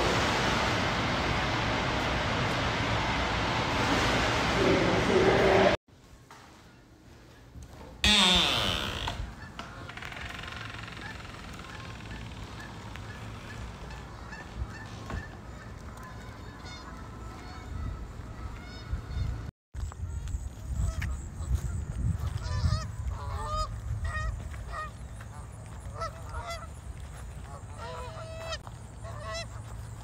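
A loud, steady rushing noise at an indoor pool that cuts off after about six seconds. After a short quiet gap, a loud sound slides down in pitch. Then comes quieter outdoor ambience with many short honking bird calls, more frequent in the last third.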